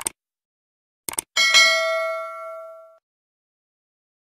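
Subscribe-button sound effects: a mouse click, then a quick double click about a second in, followed by a bright bell ding that rings on and fades over about a second and a half.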